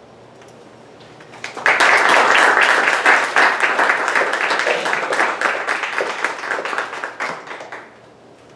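A small audience applauding. It breaks out about a second and a half in, is loudest at first, then thins out and dies away near the end.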